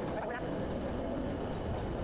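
Steady low rumble of heavy industrial plant machinery in a furnace area, even throughout.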